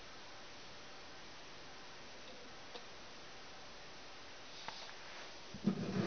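Sand-powered paper acrobat automaton running quietly under a steady low hiss, with a couple of faint ticks from its mechanism. Near the end come a few louder knocks and rubbing as the box is picked up and turned.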